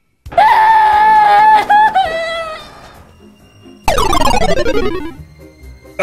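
A high, held scream from a cartoon fighter, one loud pitch for about two seconds that wavers and breaks near the end. About a second later comes a comic sound effect whose tones slide steeply down in pitch for about a second and a half.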